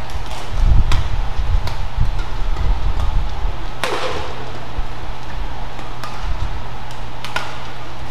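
Badminton rally: racket strings striking the shuttlecock in sharp cracks, several in quick succession, the loudest about four seconds in, then a pause and one more near the end. Low thuds of players' feet on the court run through the first half, over a steady low hum.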